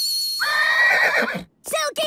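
A cartoon whistle blown on one steady, high note that stops about half a second in. It is followed by a high, whinny-like cartoon animal call, and another call begins near the end.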